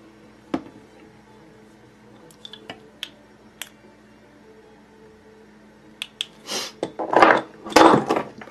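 A few small, sharp clicks and taps from handling fly-tying tools. In the last two seconds comes a loud clatter of tools and objects being knocked over on the tying desk.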